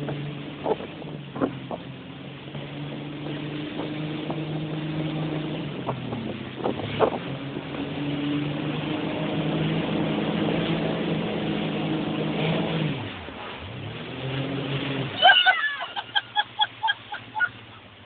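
Motorboat engine running under way with wind and water noise, its pitch dipping and climbing back twice as the throttle is eased and reopened, with a few sharp knocks along the way. Near the end the engine sound drops away and a quick run of short, high-pitched calls follows.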